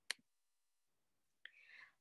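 Near silence with a single sharp click just after the start, and a faint breath near the end.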